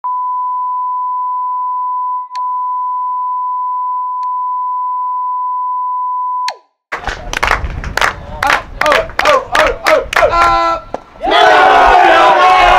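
Steady 1 kHz test tone over the colour bars, broken by two brief glitches, cutting off about six and a half seconds in. After a moment of silence, a group of voices shouts in a quick, even rhythm, and near the end this swells into loud, dense crowd cheering at a baseball game.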